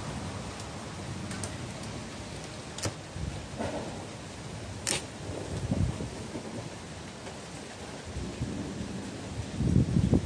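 Thunder rumbling in low rolling swells over a steady hiss of rain, the loudest roll coming in near the end. Two sharp clicks stand out a little before and after the middle.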